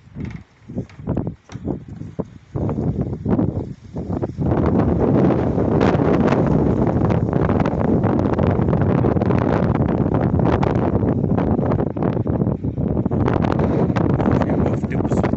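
Wind buffeting the microphone: short gusty surges at first, then a loud, steady rumbling rush from about four seconds in.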